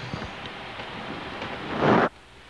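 Rustling, rumbling handling noise on a camcorder's built-in microphone as the camera is moved, swelling into a loud rush near the end that cuts off abruptly.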